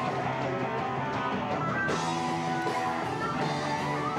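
Stoner rock band playing live: electric guitars, bass and drums.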